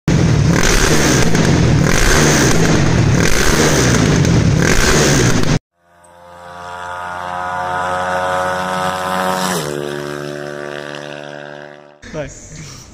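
Honda CBX 250 Twister's single-cylinder four-stroke engine, bored out to 288 cc, tuned for ethanol and fitted with a 969 aftermarket exhaust, revving loudly in repeated blips. It cuts off abruptly about five and a half seconds in. A swelling, sustained intro tone follows, which drops in pitch and fades out.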